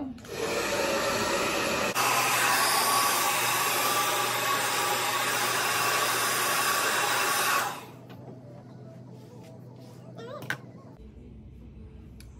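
Handheld hair dryer blowing hair dry, a loud steady rush of air that cuts off about two-thirds of the way through.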